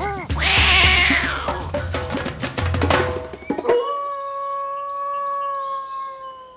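Title jingle for a wildlife segment: a loud animal call falling in pitch over the first second or so, then drum hits, then a held musical chord that carries through the rest.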